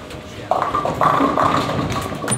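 Bowling ball striking the pins about half a second in, followed by the pins clattering and rattling.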